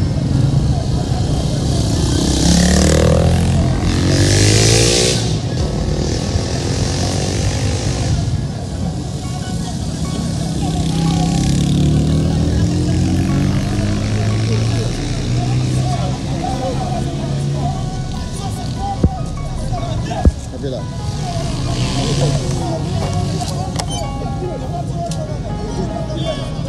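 Motorcycle engines running and revving on a busy street, rising and falling in pitch as they pass. Two sharp bangs come about a second apart, a little past the middle.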